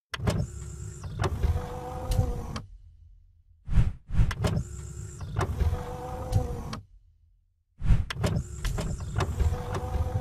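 Sound effects for an animated end card: mechanical sliding and whooshing sounds with sharp clicks and a steady hum. The same sequence plays three times, starting about every four seconds, with brief silences between.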